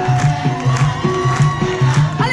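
Live band playing Mauritian séga music, with a steady repeating bass line and a long held note on top that steps up in pitch about halfway through.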